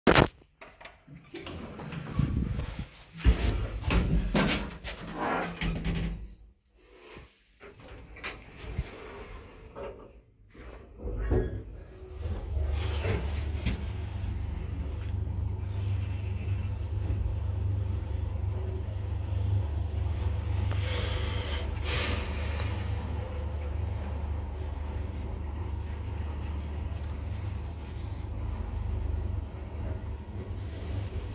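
Knocks and clunks of an elevator's manual swing landing door and cab being opened and closed. Then, from a little under halfway through, a steady low hum as the IFMA T151 traction elevator car travels upward, with a brief rush of brighter noise near two-thirds of the way.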